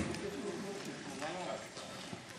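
A quiet pause filled with faint, soft voice sounds.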